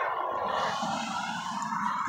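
Steady outdoor background hiss with no distinct events.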